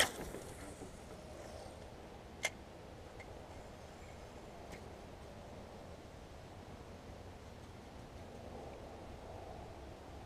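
Spinning reel retrieving a just-cast lure: a single sharp click about two and a half seconds in as the bail snaps shut, then faint, steady winding with a few light ticks.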